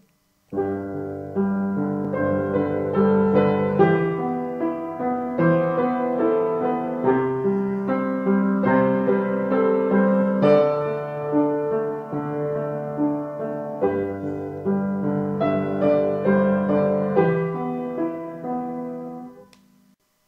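Solo piano playing a short repertoire piece: a melody over held low notes. It starts about half a second in and dies away just before the end.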